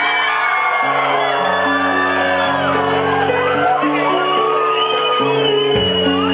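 Live rock band playing loudly, with sustained keyboard chords that change every second or so and whooping and shouting voices over the music.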